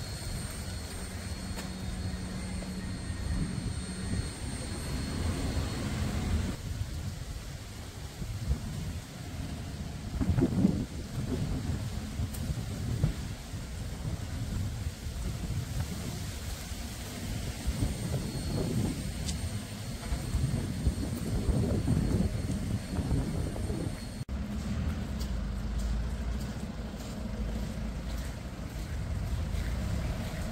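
Low, rumbling outdoor background noise that rises and falls, with no speech. The sound changes abruptly about three-quarters of the way through, after which a steadier low hum runs underneath.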